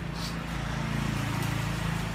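A steady low motor hum with a rough noise over it, slowly growing louder.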